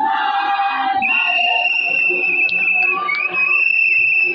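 Women's choir singing, joined about a second in by a single shrill, high held tone that carries over the voices to the end, dipping briefly once.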